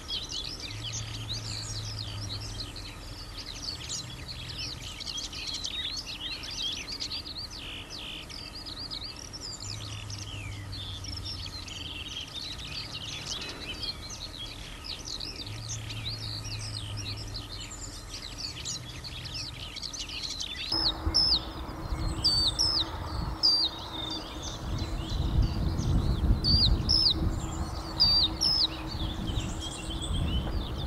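Eurasian skylark singing from a perch: a continuous, rapid stream of chirps and trills. About two-thirds of the way through the song turns abruptly sparser, with clearer whistled notes, over a low rumble.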